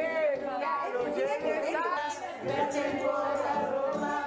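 Party music with a crowd of voices talking and singing over it, the voices and music blended together.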